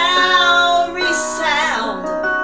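A woman singing a hymn with instrumental accompaniment, holding long notes that bend in pitch.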